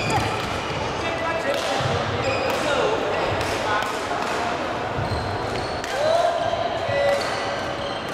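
Badminton hall sounds: repeated sharp racket hits on shuttlecocks from the courts, sneakers squeaking on the wooden floor (the loudest squeak about six seconds in), and people's voices.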